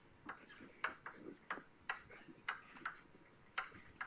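Chalk tapping on a blackboard as someone writes: a series of short, sharp, irregular clicks, about two a second.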